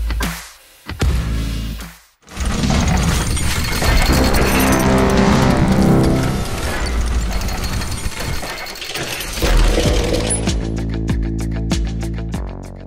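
Channel logo intro: loud electronic music with crashing, shattering sound effects. A heavy low hit comes about nine and a half seconds in, and a steady beat follows.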